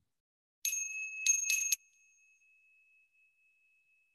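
Small high-pitched bell struck three times, the last two strikes close together, then one clear tone ringing on and fading slowly. It is the bell that closes a meditation sit.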